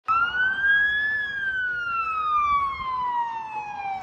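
Emergency vehicle siren wailing: a single tone rising for about a second, then falling slowly, with the next rise starting at the end.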